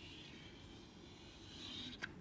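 Chalk drawing a line on a blackboard: a faint, continuous scraping that grows louder near the end as the stroke sweeps up.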